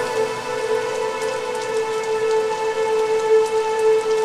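Rain falling under a held, steady synth drone of a few sustained tones, the ambient bed of a spoken-word intro track.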